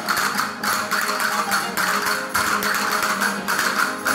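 Spanish folk string band (guitars, bandurrias and lutes) strumming an instrumental passage over an even percussion beat, with little or no singing.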